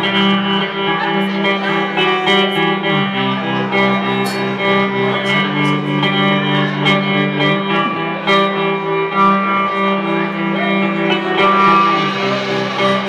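Live band playing an instrumental song intro: electric guitar chords ring out over drums with occasional sharp cymbal or drum hits, in a rough, poor-quality recording.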